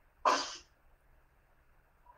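A single short, breathy burst from a person's voice, about a quarter second in and under half a second long.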